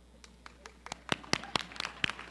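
Scattered handclaps from an audience, starting a moment in and growing denser and louder toward the end as applause begins to build.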